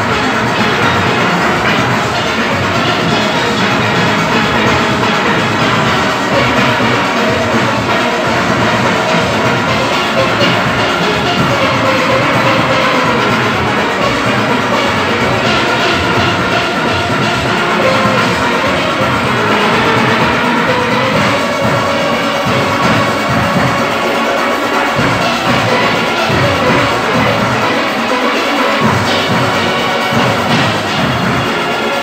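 A large steel orchestra playing at full volume: massed steelpans carry the melody over a steady beat from the bass pans and percussion.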